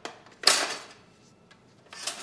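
Red four-slice pop-up toaster: a light click, then a loud metallic clack with a short rattle about half a second in as the carriage springs up and the toast pops.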